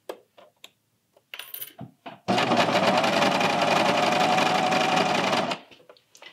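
Bernina serger (overlocker) running for about three seconds, a steady fast stitching run that sews the knit neckband seam, starting about two seconds in and stopping abruptly near the end. Before it come a few light clicks and rustles of the fabric being handled.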